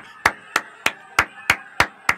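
One person clapping hands slowly and evenly, about three claps a second.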